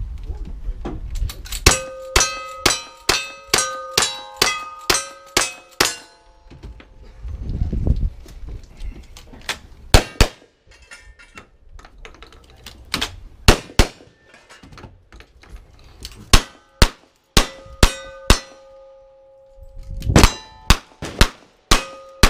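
Gunshots at a cowboy action shooting stage, each followed by the ring of a struck steel target. A rapid run of about ten shots in the first six seconds, then shorter strings of shots with pauses between them.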